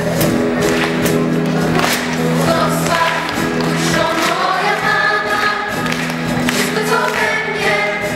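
Live Christian worship song: a choir of young voices singing with a band of electric guitar, violins and keyboard, over a steady beat. The voices come in a few seconds in, over the held chords.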